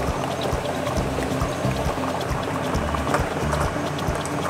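Studio background music over the clatter of plastic lottery balls tumbling in the clear drum of a lottery drawing machine as a draw gets under way.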